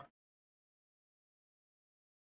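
Silence: the sound track is blank, with no audible sound.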